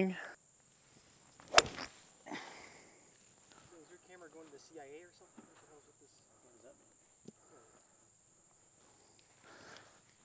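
A single sharp crack of a golf club striking a ball about a second and a half in, followed by faint distant voices. A thin, steady high insect buzz runs underneath.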